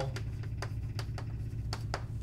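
Chalk writing on a blackboard: a quick, irregular run of sharp taps and short scratches as a word is written.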